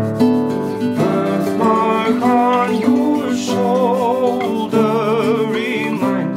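Acoustic guitar fingerpicked, with a man's voice singing over it; from about two seconds in the voice holds long, wavering notes.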